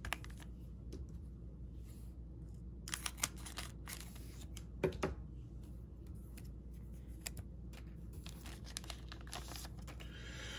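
A trading-card pack wrapper being torn open, with short rips and crinkles about three and five seconds in, followed by light rustling and ticking as the cards inside are handled. Faint throughout.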